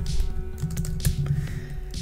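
Computer keyboard keys being typed, a run of short clicks, over soft background music.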